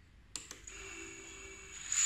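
A switch clicks on the radio transmitter, then the props-off FPV quad's brushless motors spin up at idle with a steady high-pitched whine, as Airmode keeps them running once armed; the whine grows louder near the end.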